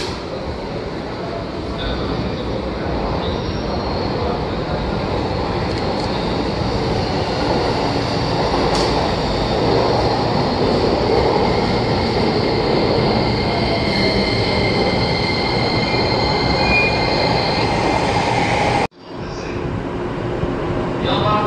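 A JR East 185 series electric train pulling into a station platform, its running noise growing louder as it comes alongside, with a thin high squeal as it slows. The sound cuts off abruptly near the end.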